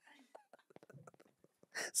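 Faint, breathy, hushed laughter and whispering close to a microphone, with small clicks; a voice starts speaking near the end.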